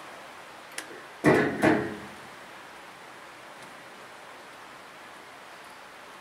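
Handling noise on a handheld microphone as it is lowered and set down: a small click, then two short rustling thumps about a second in, followed by steady faint hiss.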